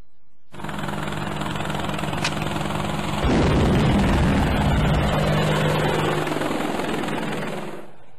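A loud, steady rushing noise with a low hum under it, getting louder about three seconds in and fading near the end.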